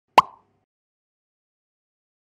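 A single short 'plop' sound effect for a video intro graphic: a quick upward blip near the start.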